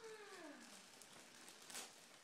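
The tail of a drawn-out vocal sound, falling in pitch and fading out in the first second, then near silence.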